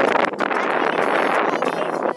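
Wind buffeting the microphone: a steady rushing noise on an exposed hilltop.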